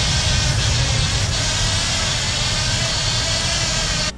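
A small four-wheel-drive RC inspection crawler (SPTM Minibot) driving through a concrete storm-drain pipe, its drive motors and rugged tires on concrete giving a loud, steady rumble and hiss. The sound cuts off suddenly at the end.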